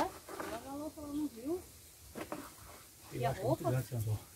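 Speech only: quiet talking in two short stretches, one at the start and one near the end.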